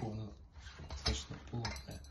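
Light metallic clinks and taps from handling a steel grip-training implement, a pipe with a pin, a plate and a chain, with a sharper knock about a second in.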